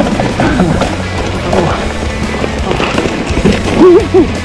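Mountain bike clattering down a steep, rocky trail: tyres and frame rattling with many short clicks and knocks over a steady rumble. Background music with a melodic line plays over it, loudest near the end.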